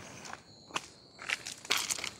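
A few scattered crunches and rustles from footsteps on loose gravel and gloved hands handling a plastic rubbish bag.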